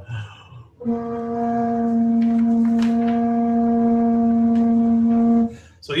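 A 70 cm wooden pipe, open at both ends and blown through a whistle-style mouthpiece, sounds one steady note just under 245 Hz for about four and a half seconds, starting about a second in. Its overtones at two and three times that pitch are clearly heard, evenly spaced as the standing-wave modes of an open pipe should be. The pitch sits a little below the ideal open-pipe value because the mouthpiece end is not a perfect open end.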